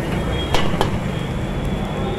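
Metal ladle knocking and scraping against a large iron wok, two sharp clanks a little after half a second in, over the steady low roar of the stove's burner fire.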